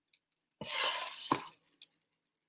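Metal spatula scraping across an electric griddle's cooking surface for about a second, followed by a few light clicks.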